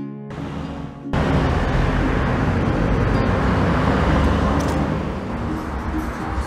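Loud, steady outdoor rumble and hiss, heaviest in the low end, comes in about a second in and carries on. Guitar music continues faintly underneath.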